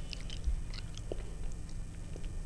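Close-miked chewing of a mouthful of khichuri: a scatter of short, sharp mouth clicks and smacks, thickest in the first second.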